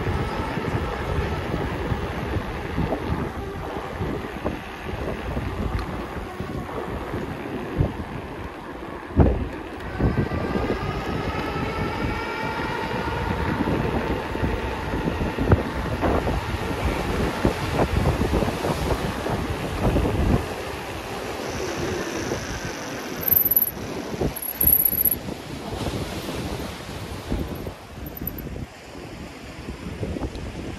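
Riding noise of a Ride1UP Core 5 electric bike at about 20 mph: wind on the microphone and the tyres rumbling and knocking over wooden boardwalk planks. Around the middle, a whine from the rear hub motor rises in pitch.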